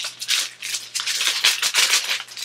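Plastic packaging crinkling and rustling in uneven bursts as items are pushed back into it by hand.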